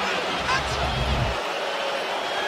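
Arena crowd noise: a steady din of many voices, with a low rumble for about a second in the middle.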